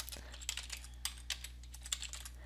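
Computer keyboard typing: a quick run of light key clicks as a line of code is typed.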